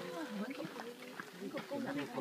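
Several voices talking at once in the background, overlapping and indistinct.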